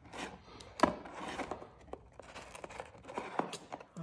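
Rigid plastic card holders clicking and rustling against each other as a stack of cased baseball cards is pulled from a box, with one sharper click about a second in.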